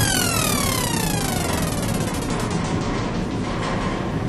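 A whistle-like tone glides steadily down in pitch over about two seconds above a continuous rumble: a falling sound effect for the quick ride down the tower.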